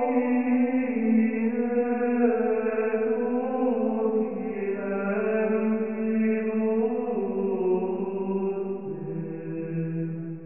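Background music: slow chanted singing, a single melodic line of long held notes that step from one pitch to the next.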